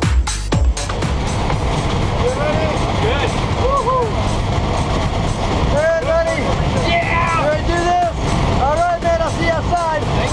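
Steady noise of the jump plane's engine and airflow inside the cabin, with men's voices calling out and laughing over it. A dance-music track with a beat cuts off just under a second in.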